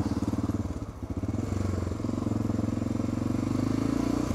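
Honda NX650 Dominator's single-cylinder 650 cc engine running steadily at low speed, its firing pulses evenly spaced.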